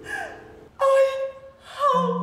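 A woman's sudden loud cry, an open-mouthed exclamation, about a second in, with a shorter gliding vocal sound near the end. A held musical note fades out in the first part.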